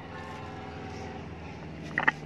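A steady low mechanical hum made of several level tones, with two sharp clicks close together near the end, from a metal utensil knocking on the plate.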